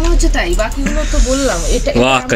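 A woman talking over a steady low hum, with a hiss lasting about a second in the middle.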